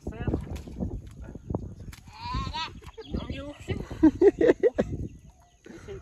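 Men's voices talking and calling out in short phrases over one another, with a higher-pitched wavering call about two seconds in and the loudest calls near the end.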